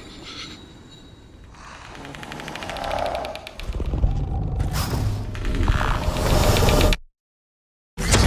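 Suspense sound design: a low rumble with a rapid clicking texture that builds steadily in loudness, then cuts off abruptly into dead silence about a second before the end.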